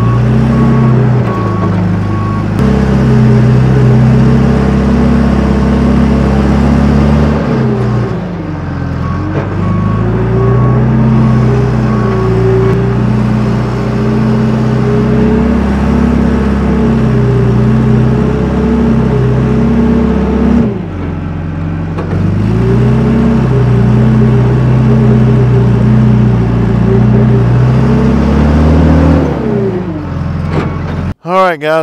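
John Deere 310G backhoe loader's diesel engine running hard as the front bucket pushes dirt; its pitch sags twice, about eight and twenty-one seconds in, and comes back up, then drops near the end. A steady-pitched beeping, typical of a backup alarm, sounds at the start and again about ten seconds in.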